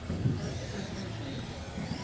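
Electric RC buggies running on the track, a steady low mix of motor and tyre noise, with a short thump about a quarter second in.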